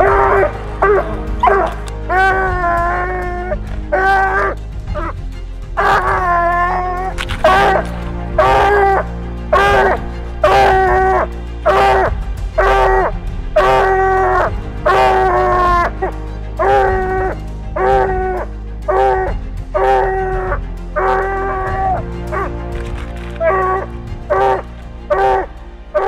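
Walker coonhound barking treed, a steady string of short barks about one and a half a second, a few drawn out longer, the sign that the dog has its quarry up the tree. A low steady music bed runs underneath.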